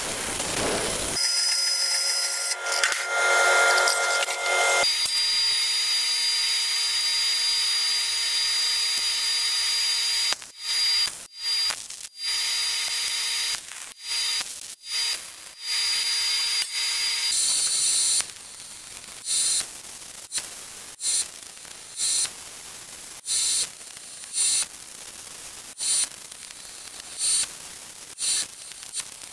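A metal-cutting band saw runs briefly at the start, then steady shop noise, then MIG welding on a steel tank: a run of short tack-weld bursts, about one a second, in the last ten seconds.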